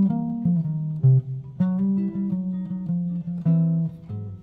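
Archtop guitar played with the fingers: a short blues turnaround lick around a C chord, a few chords and single notes struck one after another, with the loudest attacks about a second and a half second in.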